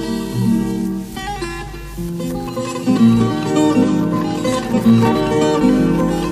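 Instrumental passage between sung verses of a Polish sung-poetry song, led by plucked guitar; the playing gets louder and busier about three seconds in.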